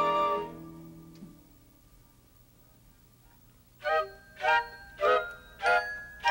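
Studio orchestra music: a held chord fades out within the first second, then after about three seconds of near quiet, short staccato chords start, one roughly every half-second.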